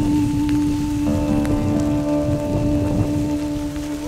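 Live acoustic folk music: one note held steady for about four and a half seconds over an acoustic guitar, with a chord coming in and ringing about a second in. Low rumbling noise runs underneath.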